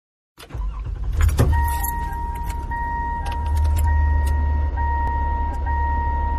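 Recorded car sounds opening a pop song: keys jangling and clicking for the first couple of seconds, then a car's warning chime ringing on over a low engine rumble.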